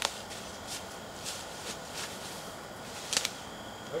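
Soft rustles and scuffs of feet shifting in dry leaf litter over a steady hiss, a few short ones spread through, the sharpest about three seconds in.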